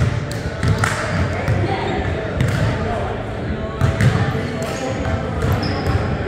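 Basketball bouncing on a hardwood gym floor, repeated thumps as the ball is dribbled and passed, with players' voices in the background.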